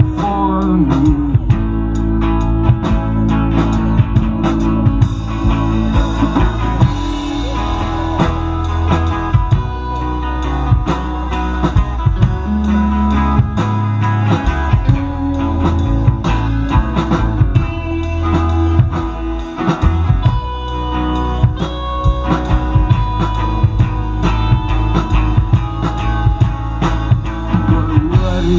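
Live rock band playing an instrumental passage with no vocals: electric guitar leads over strummed acoustic guitar, electric bass and a steady drum kit beat.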